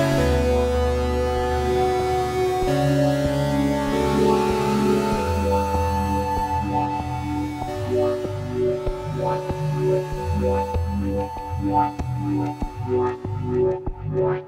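Synthesizer chords run through the Koshiba 16-step sequenced gate effect. They are held steady at first, then get chopped into a rhythmic pulsing pattern over the following seconds as the gated wet signal is mixed in over the dry one.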